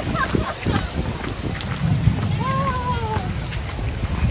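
Heavy rain pouring, with many drops pattering close to the phone's microphone. A low rumble swells in the middle and fades.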